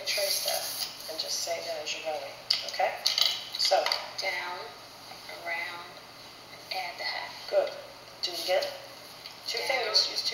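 Quiet talking voices, with a few light taps and clicks from a marker and paper handled on a tabletop.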